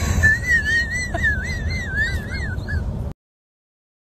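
A high, wavering whistle that wobbles up and down in pitch for about two and a half seconds, over the low rumble of road noise inside a moving car. All sound cuts off suddenly about three seconds in.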